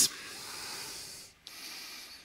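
Pen strokes drawing on a writing surface: a faint rubbing hiss in two long strokes, broken briefly a little past halfway.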